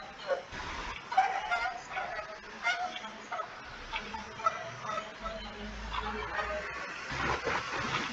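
A voice reading aloud in short, broken phrases, faint and thin as it comes over a video-call line; it is hadith text being read out.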